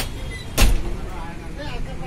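Steady street-traffic background with a loud, sharp thump about half a second in, preceded by a faint click, and people's voices near the end.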